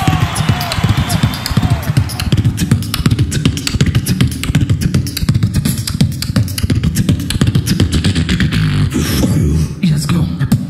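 A beatboxer performing through a hand-held microphone and PA: a fast, dense beat of mouth-made clicks and percussive hits over heavy bass, made by mouth alone with no effects or instruments.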